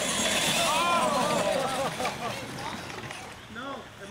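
People laughing and chattering over the whir of radio-controlled monster trucks driving on dirt. The truck noise fades after about two seconds.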